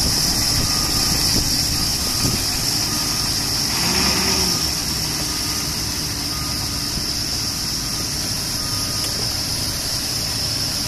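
Diesel engine of a 2002 International Thomas-bodied school bus idling steadily, with a brief rise and fall in pitch about four seconds in.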